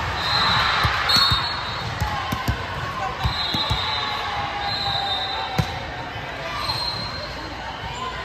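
Volleyball being bounced and struck on a gym court: a series of sharp thuds, the loudest a little past halfway. Short high squeaks, likely sneakers on the hardwood, and chatter from players and spectators sound through the echoing hall.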